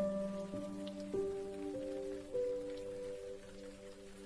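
Slow, soft piano melody: about five single notes in the first half, each ringing on, the last held through the rest. Under it is a steady patter of rain.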